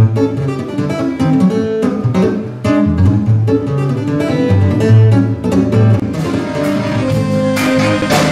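Electric guitar playing a picked instrumental passage of separate notes and chords, with lower notes coming in underneath about three seconds in.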